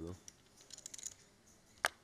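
Poker chips clicking as they are handled at the table: a quick run of faint clicks about halfway in, then one sharper click near the end.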